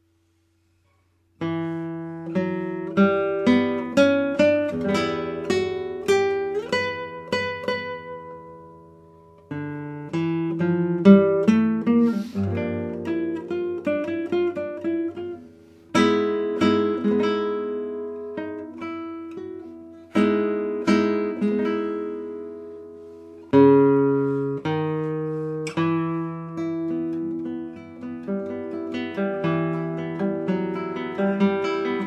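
Solo guitar playing a contemporary classical sonata movement: plucked notes and chords in phrases that start sharply and die away. It starts about a second and a half in.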